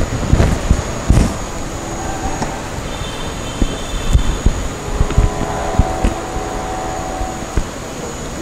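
Low thuds and light knocks from hands working a Vicat apparatus as its plunger is set down to the cement paste, over a steady background hum with a faint high whine.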